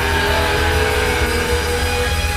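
Rock band playing loud, dense rock music, with sustained notes sliding downward in pitch in the first second.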